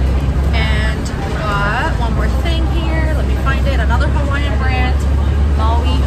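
Inside a moving city bus: the bus's engine and road noise make a steady low rumble, with someone talking over it.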